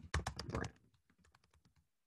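Typing on a computer keyboard: a quick run of keystrokes in the first half second or so, then only faint, scattered key taps.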